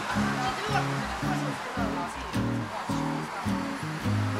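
Background music: low chords and bass notes changing in a steady rhythm, over a light outdoor hiss.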